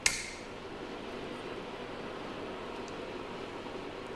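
A single light clink right at the start, fading quickly, then a steady background hiss.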